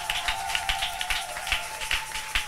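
A church congregation clapping in a quick, uneven patter of hand claps as it acclaims, with one steady held note running through it that stops near the end.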